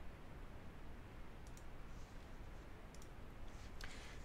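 A few faint computer-mouse clicks over a low, steady hiss.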